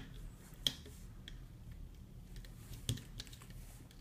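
Light, irregular clicks and taps of a hook and rubber bands against the plastic pegs of a rubber-band loom as bands are looped forward, with two sharper clicks, one about two-thirds of a second in and one about three seconds in.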